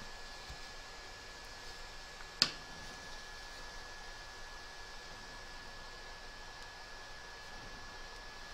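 Quiet room tone with faint handling of fabric as a metal drinking straw and cord are worked through a bag's drawstring channel. There is a faint steady high whine throughout and a single sharp click about two and a half seconds in.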